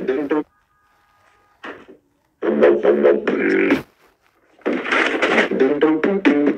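A man's voice making beatbox-style mouth sounds in loud bursts: a burst that stops about half a second in, a short blip, then two longer bursts after the middle.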